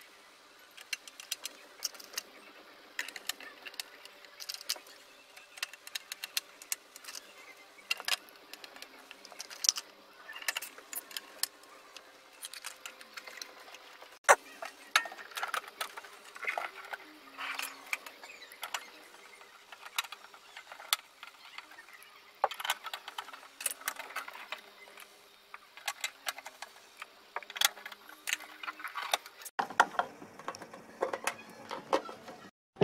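Irregular clicks, taps and light metallic knocks of a screwdriver, screws and the sheet-metal case of a cassette deck being handled during reassembly.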